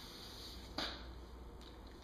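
Quiet handling noise while varnish is wiped onto a table edge by hand: one sharp click a little under a second in, over a steady low hum.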